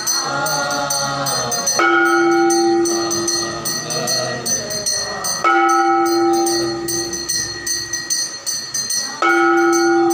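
Temple aarti: devotees sing together over a fast, steady metallic clashing, with a large temple bell struck about every three and a half seconds, three times in all, each stroke ringing out and fading.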